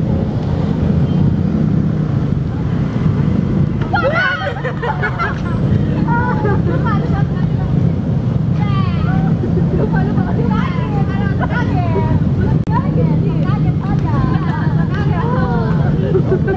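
Several young people's voices talking excitedly and laughing, starting about four seconds in, over a steady low rumble of passing road traffic.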